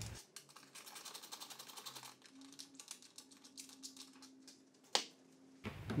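Faint, rapid light clicking from a hand wrench working the golf cart's seat-back bolts, with one sharp click near the end.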